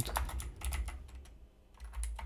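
Typing on a computer keyboard: a quick run of key clicks over the first second, a brief pause, then more keystrokes near the end.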